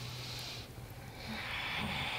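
A person breathing slowly and audibly during yoga movement: two long breaths with a short pause between them, the second starting a little past halfway.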